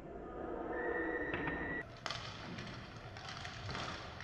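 Live inline hockey game sound in a reverberant sports hall: a steady high tone about a second long over the voices of the rink, then, after a cut, scattered knocks of sticks and puck with the rumble of skate wheels on the wooden floor.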